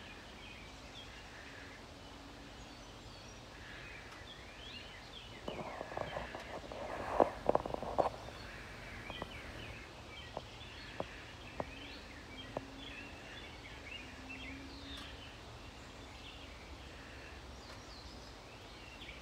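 Small birds chirping in the background throughout. A cluster of sharp clicks and taps comes about halfway through, followed by a few single clicks.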